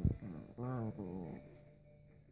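A dog giving short, drawn-out grumbling vocalizations, two in quick succession in the first second and a half, with a sharp thump right at the start.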